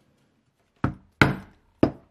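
A mallet striking a steel leather punch to drive holes through leather: three sharp knocks with a short ring after each, the first about a second in.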